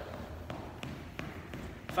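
Footfalls of a person jogging in place on a hardwood gym floor: light, evenly spaced thuds about three a second.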